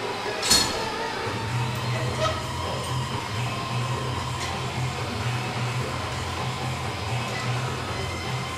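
Faint background music over a steady low hum, with one sharp clink about half a second in.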